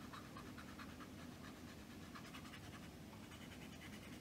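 Paper blending stump rubbed quickly back and forth over graphite pencil marks on sketchbook paper to smudge and blend the shading: a faint, rapid, rhythmic scratching, several strokes a second.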